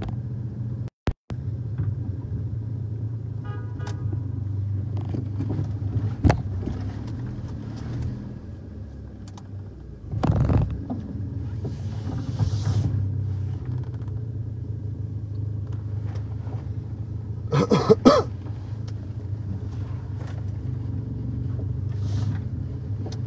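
A car engine idling nearby, a steady low hum. It eases off for a couple of seconds just before the middle and picks up again. Short louder noises come about ten and eighteen seconds in.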